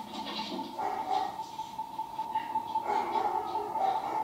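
The film's soundtrack playing: a steady high ringing tone, with faint, irregular voice-like sounds beneath it in the second half.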